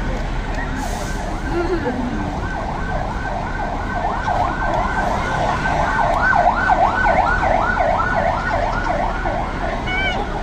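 Emergency vehicle siren in a fast yelp, its pitch swooping up and down about three times a second, growing louder to a peak about two-thirds of the way through.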